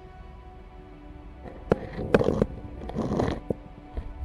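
Dark, sustained background music with steady held tones. About halfway through, a cluster of sharp knocks and short bursts of noise cuts in, including a brief laugh, then dies away before the end.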